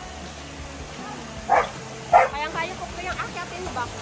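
A dog barking twice, about a second and a half in and again half a second later, followed by short pitched vocal sounds.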